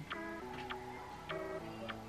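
Soft background music: held chords with a light ticking beat about every half second.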